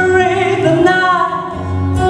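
A woman singing live into a stage microphone, drawing out long notes that slowly bend in pitch, with music behind her.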